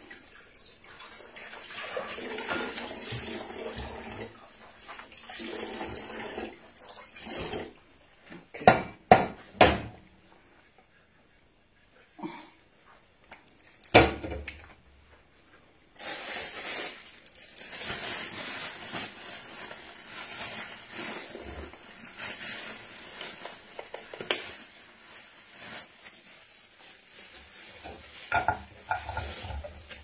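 Washing up at a kitchen sink: a metal pot and dishes clatter, with a few sharp clanks near the middle. About halfway through, the tap comes on and water runs steadily into the sink.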